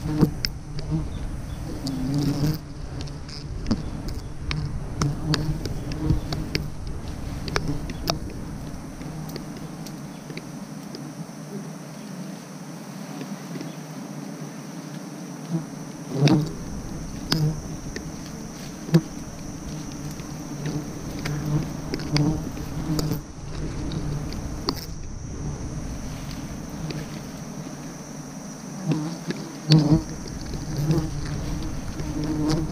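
Wild honeybees buzzing around their nest as it is smoked, a steady low hum that swells and fades, with frequent sharp rustles and snaps of leaves and twigs and a few louder knocks in the middle.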